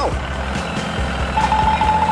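A tractor engine running steadily with a low hum, joined a little past halfway by a high, rapidly pulsing beep like a reversing alarm that lasts about a second.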